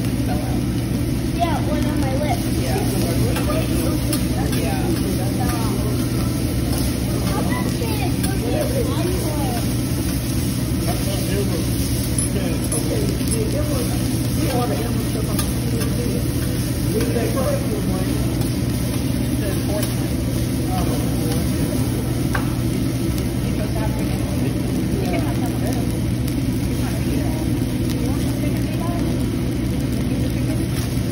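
Steady low drone from the hibachi grill's ventilation, with a constant murmur of voices from the surrounding tables.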